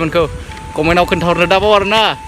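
A man talking excitedly in quick bursts, with background music underneath.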